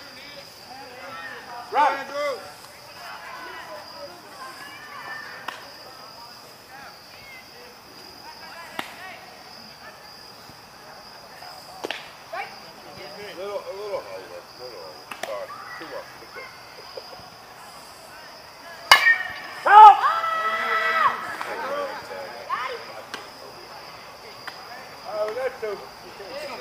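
Players' voices calling out across a softball field, with a few light knocks. About 19 s in comes one sharp crack of a bat hitting the softball, followed at once by loud shouting. A steady high-pitched drone runs underneath.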